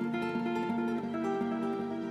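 Background music: acoustic guitar picking a steady run of single notes.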